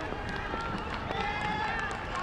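Open-air ambience of a cricket ground: faint, indistinct voices of players out on the field over a steady outdoor background hum.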